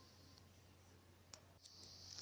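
Near silence: room tone with a low steady hum, broken by one short faint click about a second and a half in and a fainter one just after.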